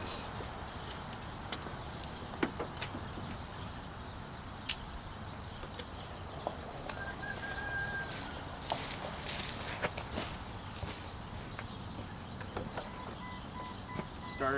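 Faint outdoor background with a few small bird chirps and scattered light clicks and taps.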